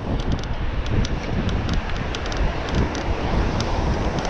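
Wind buffeting the microphone of a camera on a moving bicycle, over a steady low rumble from the road, with scattered light ticks.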